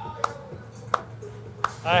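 Three sharp handclaps, slow and evenly spaced a little under a second apart, over a steady low hum of factory machinery.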